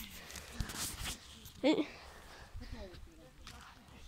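A quiet stretch of faint voices, with one short vocal sound about a second and a half in, over soft handling noise and a light knock near the start.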